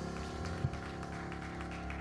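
Church instrumental backing holding a sustained chord of steady tones, with one soft low thump about two-thirds of a second in.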